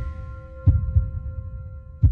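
Heartbeat sound effect: a double low thump about two-thirds of a second in, under the fading ringing tones of the trailer's music.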